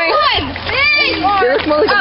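Several young people's voices talking and calling out over one another, with one high call about a second in.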